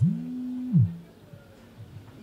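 A short low hum, held steady for under a second and then sliding down in pitch.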